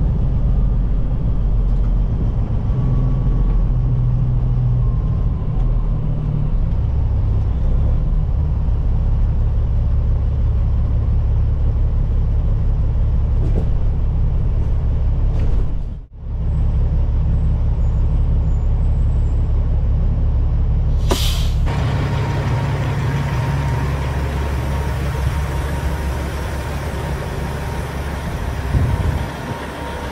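Peterbilt 379's diesel engine running with a deep, steady rumble, heard from inside the cab as the truck rolls slowly. A short, sharp hiss comes about two-thirds of the way through, after which the rumble turns noisier and less deep.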